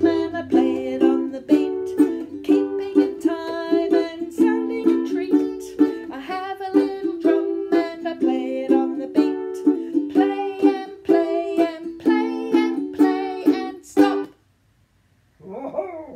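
Ukulele strummed in a steady rhythm of chords that stops suddenly a couple of seconds before the end.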